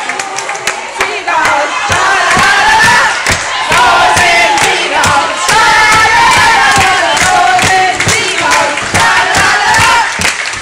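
A group of young women cheering and chanting loudly together in unison, with clapping among them.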